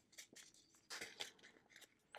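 Faint crinkling and a few scattered clicks as a small plastic bag of diamond painting drills is handled, the resin drills shifting inside it.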